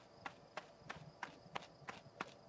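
Footstep sound effects of a cartoon kiwi bird: light, short taps at an even pace of about three a second as it walks and then runs.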